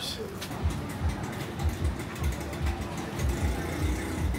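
Busy market alley ambience with a repeated low thumping, about one or two thumps a second, under a faint steady hum in the second half.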